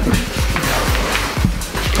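Background music with a steady beat, over the hiss of an aerosol whipped-cream can spraying cream.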